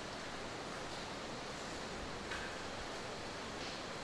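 Steady faint hiss with no distinct sound events.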